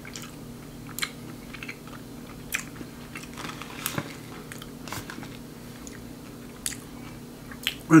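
A person chewing a mouthful of crunchy dairy-free chocolate bark with hazelnuts and crispy rice: irregular crisp crunches scattered through, over a low steady hum.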